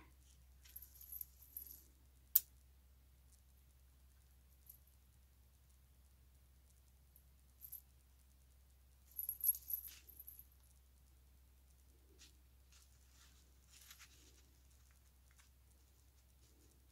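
Tiny metal jingle bells on a craft tassel jingling faintly in three short spells as it is handled. A single sharp click about two seconds in is the loudest sound.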